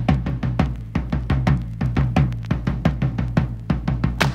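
Instrumental passage of a Soviet estrada song played from a vinyl record: a drum kit playing a quick, busy rhythm of about five strokes a second over a steady bass line.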